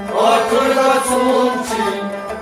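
Kashmiri Sufi song: a group of men singing a chant-like line together over a sustained harmonium. A rabab and a goblet hand drum play along.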